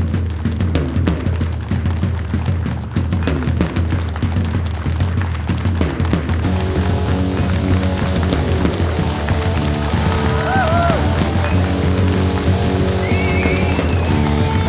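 Rock band playing live: fast drumming with cymbals, joined about six seconds in by sustained electric guitar chords that ring on, with a few high gliding notes near the end.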